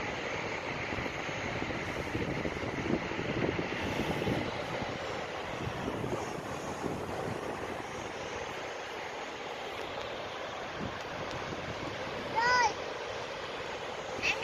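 Sea surf washing on the shore with wind buffeting the microphone, a steady noisy rush. Near the end comes one brief, high-pitched voice call.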